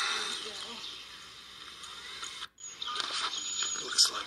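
Indistinct voices over outdoor background noise, broken by a sudden silent gap about two and a half seconds in.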